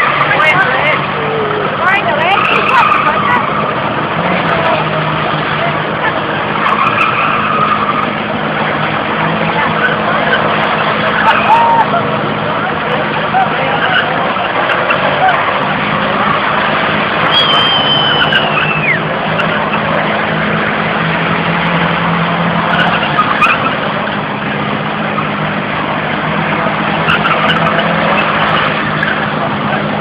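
Car drifting on tarmac: engine running hard under a continuous tyre-squeal haze, with a high squeal that slides down in pitch about seventeen seconds in.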